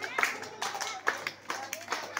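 Scattered hand clapping from an audience, with voices talking over it.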